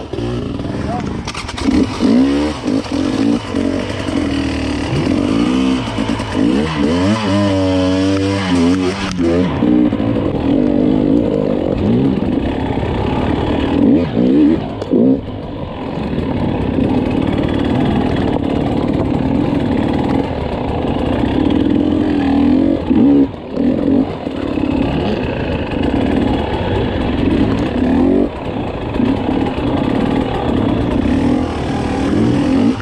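Dirt bike engine running at low, uneven revs, the throttle opened and closed again and again while the bike crawls over rocks, with a quick series of rising and falling revs about eight seconds in.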